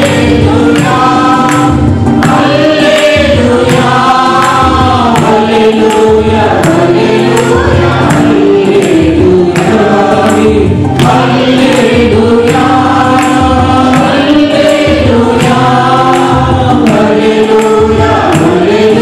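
A small mixed choir of men and women singing a Telugu Christian worship song in unison through microphones. Instrumental accompaniment with a steady beat runs under the voices.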